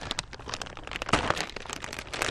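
Clear plastic packaging bag crinkling as it is handled and set down, an irregular run of sharp crackles.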